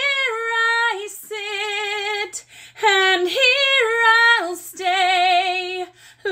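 A woman singing long, held notes with a wide vibrato, in four phrases with short breaks between them.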